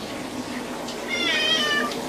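Domestic cat giving one drawn-out, high-pitched meow, slightly wavering and about a second long, that starts about halfway through and dips in pitch at the end: a cat protesting at being put back in the bath.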